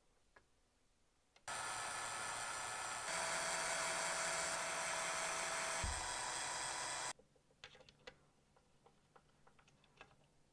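Cordless drill with a small bit, boring screw pilot holes into a guitar's wooden headstock beside the tuners. It runs with a steady whine for about five and a half seconds, starting about a second and a half in and getting louder about three seconds in, then stops. A few light clicks of handling follow.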